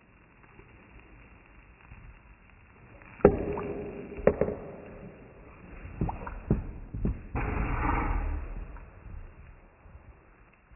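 A man spluttering and gurgling through a mouthful of burning eggnog shot. A sharp, loud knock comes about three seconds in, a few more knocks follow, and there is a noisy rush near the end.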